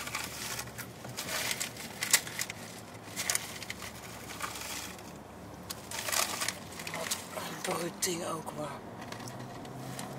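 Cars driving slowly in a line, engines and tyres running at low speed, with a few sharp clicks and faint voices.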